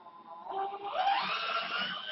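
Hand-held electric drill starting about half a second in and running up to speed, its whine rising in pitch about a second in as it drills a hole in a plastic box.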